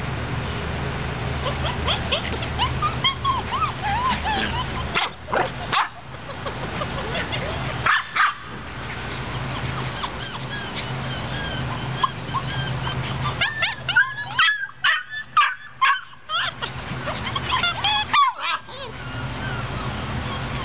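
Black Borador puppies playing, with short high yips, whines and barks coming in bursts over a steady low hum.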